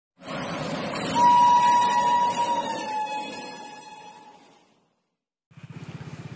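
An approaching train sounding its horn: one long blast, its pitch dropping slightly, over the rumble of the train on the track, all fading out near the end.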